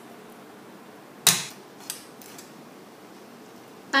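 A cleaver chopping garlic on a wooden chopping board: one loud chop about a second in, then a couple of lighter knocks.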